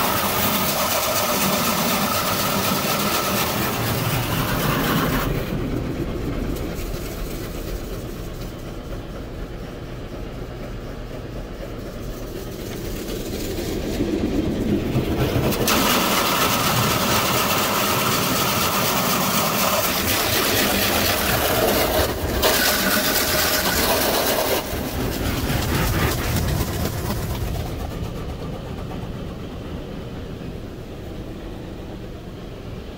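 High-pressure water jets of a Futura SSA touchless car wash spraying the car, heard from inside the cabin. The spray comes and goes in passes as the gantry moves over the car: loud at first, dropping back for about ten seconds, loud again, then fading near the end.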